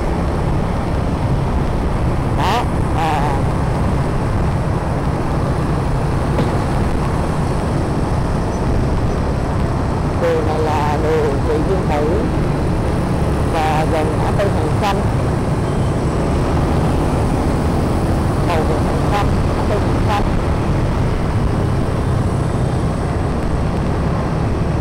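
Motorbike riding through dense traffic: a steady low rumble of wind on the microphone over the engine and surrounding road traffic. A few short stretches of muffled voice-like sound cut in along the way.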